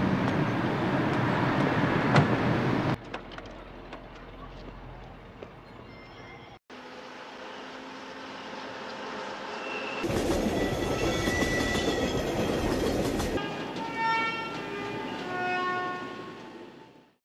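Film soundtrack in cuts: a few seconds of loud city traffic noise, then quieter sound, then a train running through a rail yard. The train gets louder about ten seconds in, and several steady high tones sound near the end.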